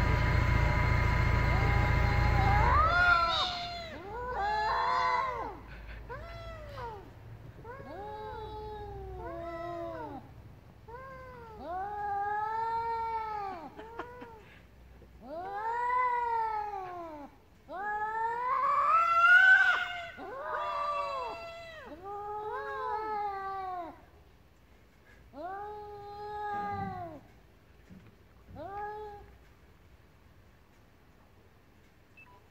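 Domestic cats caterwauling in a standoff: a dozen or so long, drawn-out yowls that rise and fall in pitch, each a second or two long with short pauses between, the loudest just before the two-thirds mark. A steady mechanical drone cuts off suddenly about three seconds in.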